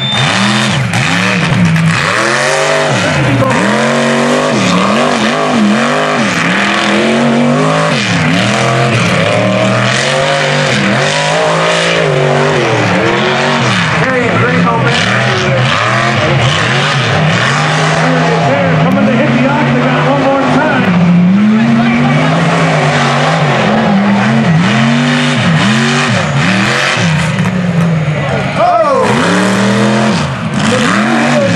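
Mega mud truck's big engine revving hard over and over, its pitch swooping up and down as the throttle is blipped, with a sharp rising rev near the end.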